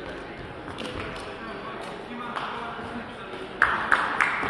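Echoing background chatter in a sports hall, with a few light taps of a shuttlecock being kicked. A short, loud, shrill sound comes near the end as a player lunges for the shuttlecock.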